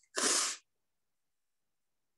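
A woman crying: one short, sharp sob about a quarter of a second in, lasting about half a second.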